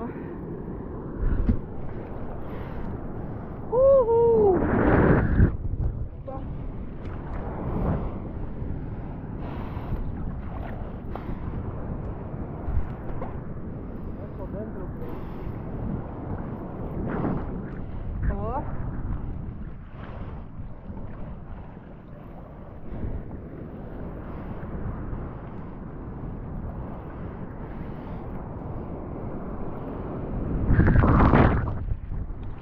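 Sea water sloshing and splashing around a camera held at the surface while a bodyboarder paddles, with wind on the microphone. A louder rush of water comes about four to five seconds in.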